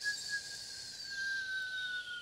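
A u-he Diva software synthesizer preset being auditioned: a single held, whistle-like synth note whose pitch sinks slightly as it sounds.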